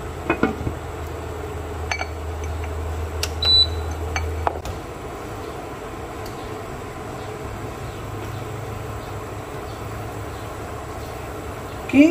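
Portable induction cooktop humming steadily under a lidded wok of asam pedas broth heating toward the boil. A few light clicks come in the first four seconds or so. About four and a half seconds in, the hum shifts to a slightly different pitch and holds there.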